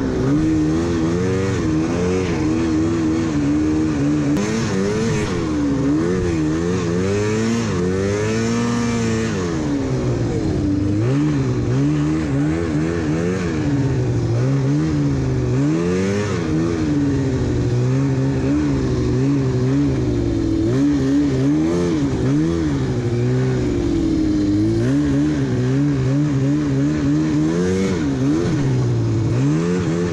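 Yamaha Phazer snowmobile engine under way, its pitch rising and falling every second or two as the throttle is opened and eased.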